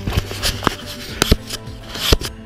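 Decathlon Rockrider E-ST 520 mountain e-bike jolting along a rutted, muddy track, giving a handful of irregular sharp knocks and clatters over a low steady hum.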